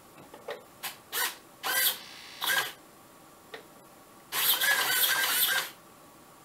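Two 9-gram hobby servos whirring in several short bursts, then one longer run of about a second and a half near the end, as a quickly toggled transmitter stick drives the plane's control surfaces back and forth. Under this fast toggling the servos stop responding, which the builder puts down to the ESC's BEC being too weak to power both servos and pulling the supply rail down.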